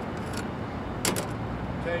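Sharp plastic clicks from a Realistic SCR-3 boombox's cassette deck as its keys and cassette door are worked, one shortly after the start and a louder one about a second in, over a steady low rumble.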